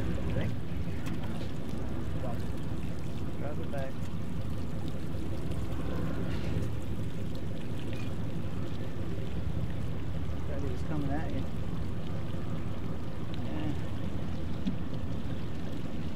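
Boat engines idling in a steady low drone, with faint voices now and then.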